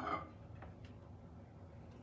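Quiet kitchen room tone with a few faint, short clicks scattered through it.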